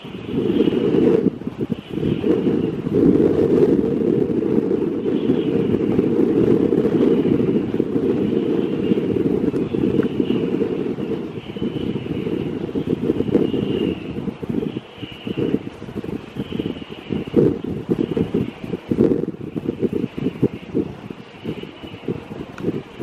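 Wind buffeting the microphone: a loud, gusty low rumble that turns choppier and more broken after about fourteen seconds.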